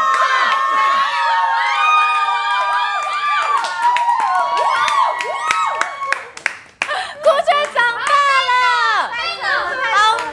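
A small group cheering a drinker on with long, drawn-out shouts and clapping. The shouting breaks off about two thirds of the way through, then sharp claps and excited overlapping voices follow.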